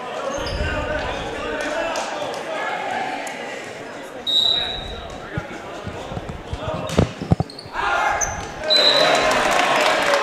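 Volleyball in a gymnasium: crowd chatter, a short referee's whistle about four seconds in, then a few sharp ball strikes around the serve, the loudest a pair about seven seconds in. A second short whistle near the end ends the rally after the serve goes long.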